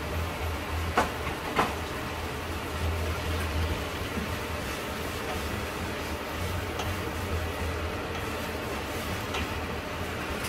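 A wooden spoon stirring poblano strips, corn and sour cream in a stainless steel saucepan on a gas burner, over a steady rumbling background with a low hum. Two sharp clicks come about a second in, as the seasoning shaker is used over the pan.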